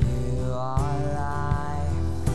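Live worship band music: a long sung note over acoustic guitar, keyboard and drums, with a drum stroke about every three quarters of a second.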